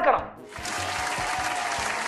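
Audience applause, a steady clapping that starts abruptly about half a second in.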